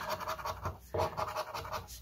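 A coin scraping the scratch-off coating from a paper lottery scratch card in a quick run of short strokes, pausing briefly twice.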